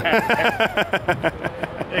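Men laughing: a quick, even run of short 'ha-ha' pulses that tapers off.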